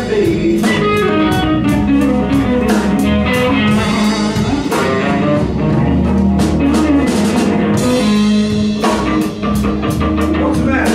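Live blues band playing a slow blues instrumental passage: electric guitar lines with bent notes over drums with steady cymbal strokes and keyboard.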